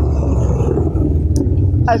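Noisy motorcycle engine running in the street, a loud, steady low rumble.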